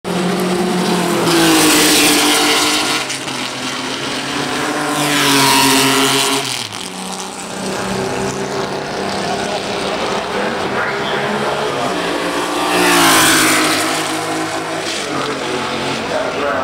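Historic open-wheel racing cars passing at speed down a straight, their engines loud and falling in pitch as each goes by. The loudest passes come about two seconds in, at about five and a half seconds, and at about thirteen seconds, with more engine sound from the field in between.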